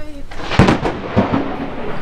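Strong wind buffeting the microphone, a loud, rough rushing rumble with no steady tone.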